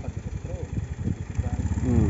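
Car engine running with a low, uneven rumble.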